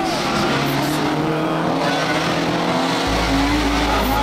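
Fiat Punto Super 1600 rally car's four-cylinder engine at high revs as the car comes through a bend, its pitch wavering with the throttle over a steady wash of tyre noise on the asphalt.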